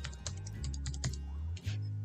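Typing on a computer keyboard: a run of quick, irregular key clicks over soft background music with a steady bass line.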